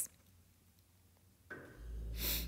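Near silence, then about a second and a half in a background noise starts and settles into a steady low hum that runs on: the background sounds that interrupt the voiceover recording.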